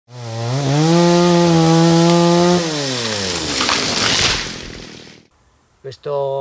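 Chainsaw revving up to high revs, holding there for about two seconds, then slowing down and dying away.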